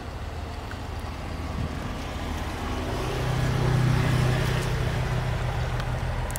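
A motor engine running with a steady low hum, growing louder about halfway through.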